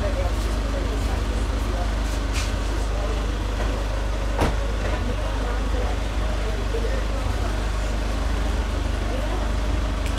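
A steady low rumble under faint, indistinct murmured voices, with one sharp click about four and a half seconds in.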